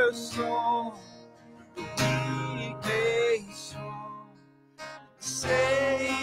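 A man singing a worship song to his own strummed acoustic guitar, in sung phrases with short pauses between them.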